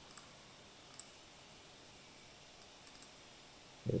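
A few faint, sharp clicks of a computer's pointing device over quiet room tone: single clicks about a second apart, then a quick cluster of three near the end.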